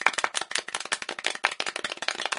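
An added sound effect of dense, rapid, irregular sharp clicks, like a short burst of hand-clapping applause.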